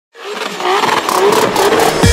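Intro sound effect: a noisy, engine-like swell with wavering pitch that fades in quickly and builds toward the intro music.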